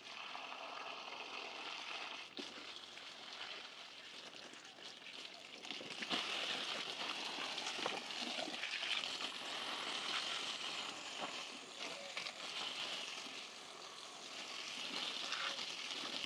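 Water spraying from a garden hose onto potted plants and wet paving: a steady hiss of spray that grows louder about six seconds in.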